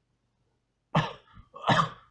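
A man coughing twice, about a second in and again just before the end, right after taking a drag and blowing out the smoke.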